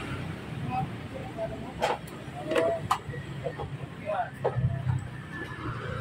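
Indistinct background voices over a steady low rumble, with several short sharp clicks in the middle from hands handling scooter wiring and connectors.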